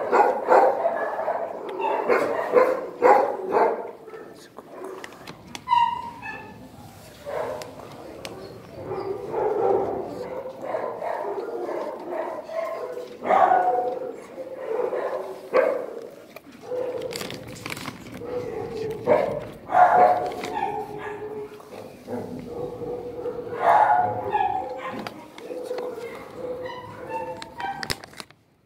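Dogs barking on and off in a shelter kennel block, irregular sharp barks scattered through the stretch, with a long steady note held underneath in the later part.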